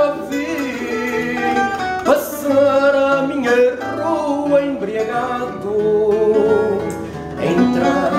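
Live fado: a Portuguese guitar (guitarra portuguesa) playing melodic plucked lines over a classical guitar (viola de fado) accompaniment, with a male voice singing long held notes.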